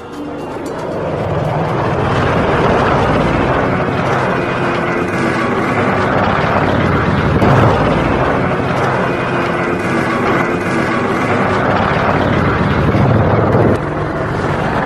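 Military attack helicopter flying past, a steady rotor and turbine noise that swells in over the first couple of seconds and then holds.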